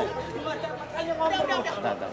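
Several people talking over one another in agitated chatter, with no single clear voice.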